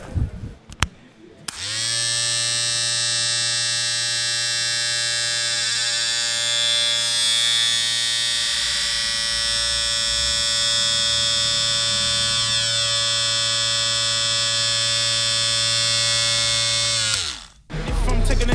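Electric hair clippers are switched on about a second and a half in and run steadily for about fifteen seconds. Near the end they are switched off and their pitch drops as the motor winds down.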